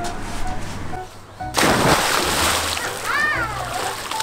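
A child jumping into a swimming pool: one loud splash about one and a half seconds in, the churned water dying away over about a second.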